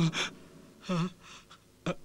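A man's tearful voice: the tail of a crying call, then a gasping sob about a second in.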